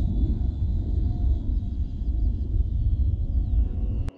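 Wind buffeting the microphone outdoors with an uneven low rumble. Over it is a faint, thin high whine from the model plane's electric contra-rotating motor and propellers in flight, dipping slightly in pitch now and then.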